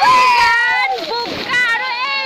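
Several high-pitched voices shouting and shrieking over one another, with splashing from people thrashing about in shallow muddy floodwater.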